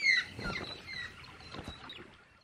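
Birds calling in short whistled notes that glide downward in pitch, the loudest at the very start and repeating a couple of times, mixed with a few faint knocks. The sound fades out near the end.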